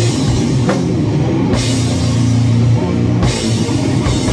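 Instrumental doom/sludge rock riff on distorted electric guitar and drum kit: heavy low sustained guitar notes under drums, with several cymbal crashes.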